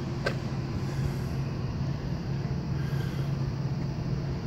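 Steady low mechanical hum over a background of outdoor rumble, with a single short click about a third of a second in.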